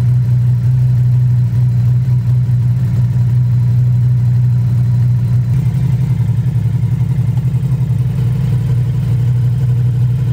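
Ducati Multistrada V4 Pikes Peak's 1,158 cc V4 engine idling steadily, run after a fresh oil fill so the oil circulates before the level is rechecked. About halfway through its sound becomes more pulsing.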